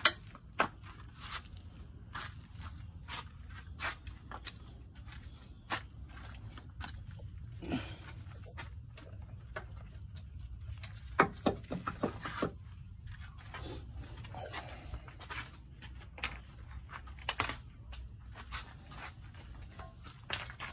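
Scattered clicks, knocks and light scrapes of metal engine parts and tools being handled, with a cluster of sharper knocks about eleven seconds in, over a steady low rumble.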